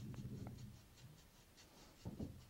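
Faint, light scratching of a fine paintbrush stroking a wash onto a plastic model part, several quick strokes in a row, with a brief low hum at the start.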